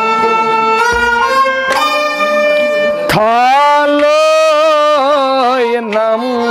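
Kashmiri Sufi folk music: plucked rabab strokes ring over held notes for the first few seconds. From about three seconds in, a long sung note slides up, holds, and ends in quick wavering ornaments.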